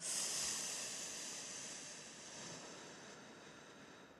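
A long, slow breath out close to a handheld microphone, a hiss that starts sharply and fades gradually over about four seconds: the slow exhale of a timed breathing exercise.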